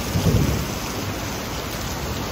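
Heavy rain of a thunderstorm falling steadily as an even wash of noise, with a brief low rumble about a quarter second in.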